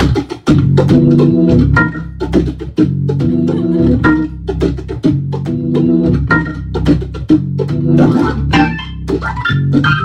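Hammond B3 organ playing a rhythmic groove: repeated chords with crisp clicking attacks over a steady low bass.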